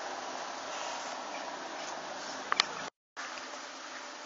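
A steady buzz like flying insects, broken by two sharp clicks about two and a half seconds in. Just after the clicks the sound cuts out completely for a moment, then resumes.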